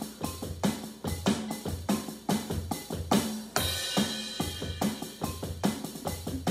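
Drums played with sticks in a steady groove at about 144 beats a minute, low drum thumps alternating with sharper hits. A crash rings out a little past halfway.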